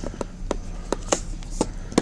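Irregular small clicks and taps as fingers unscrew the end cap of a Penbbs 355 bulk-filler fountain pen to free its filling piston, with the nib held down in a glass ink bottle.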